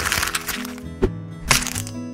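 Sheet of paper crumpled into a ball, a crackling rustle lasting about a second, followed by two short sharp clicks, over light background music.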